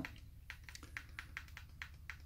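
Faint, quick clicks of a small handheld remote control's buttons being pressed over and over, about five a second.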